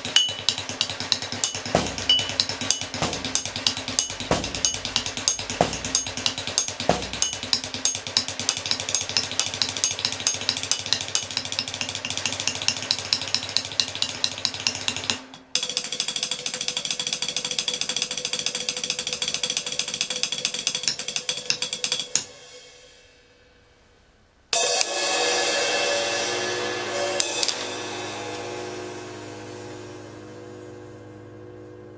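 Drumsticks rapidly striking the metal stands and pedals of drum hardware in a fast, dense rhythm, with a few low thumps in the first seconds. About fifteen seconds in it breaks off suddenly into a different ringing pattern, which stops a few seconds later; after a short silence a loud metallic ringing strike slowly dies away.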